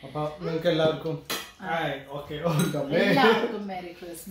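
Wine glasses clinking together in a toast, with a sharp clink a little over a second in, under several voices talking.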